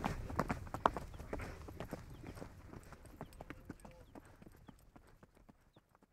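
A horse's hooves clip-clopping in a quick, steady run of hoofbeats, growing steadily fainter until they fade out near the end.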